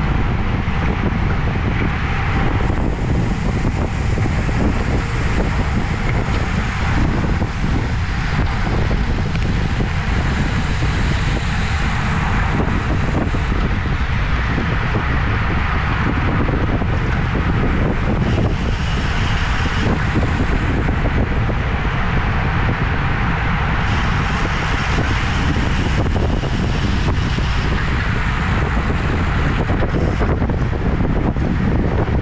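Steady, loud wind noise rushing over the microphone of a camera mounted on a road bike riding at about 25 mph, with road noise from the tyres underneath.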